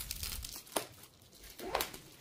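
Handling noise from a paperback book and its box packaging: soft rustling and crinkling as the book is turned over and moved, with a light tap just under a second in and a brief rustle near the end.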